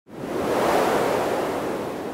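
A rushing wash of noise that swells in quickly and then slowly fades: the intro sound effect of an electronic dance track, before the beat comes in.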